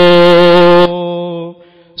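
A man's voice chanting through a PA system, holding one long steady note that stops sharply just under a second in. A quieter fading echo of the note follows, then a short pause.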